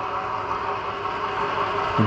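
Electric stainless-steel home oil press running steadily as its screw presses flaxseed and pushes out the pressed cake: a continuous motor hum with several steady tones.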